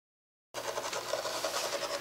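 Magnetic sand-drawing machine running: a 1.5-inch chrome steel ball ploughing through sand with a steady grainy rasp, over a low mechanical hum from the drive. The sound cuts in suddenly about half a second in.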